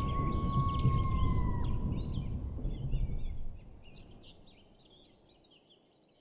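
Outdoor ambience of many small bird chirps over a low rumbling wash of noise. A long steady whistled note holds through the first second and a half, then ends with a slight drop in pitch. The rumble falls away after about three and a half seconds, leaving only faint chirping.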